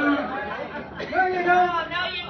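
Overlapping chatter of several people talking at once in a large hall.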